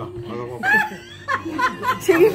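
A few people laughing and chattering, with short high-pitched giggles about halfway through.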